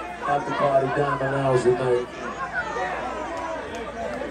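People talking and chattering, voices overlapping, with no music playing.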